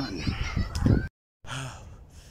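A jogging man's heavy breathing and sighing, close to a phone microphone, with rubbing and knocking from the hand-held phone. The sound drops out completely for a moment just after a second in, then the breathing resumes more quietly.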